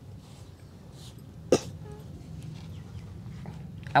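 A single short, sharp cough from a person about a second and a half in, over a faint steady low hum.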